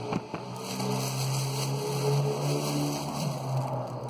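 A steady low motor drone that wavers slightly in pitch, like an engine running, with a brief rustle or knock right at the start.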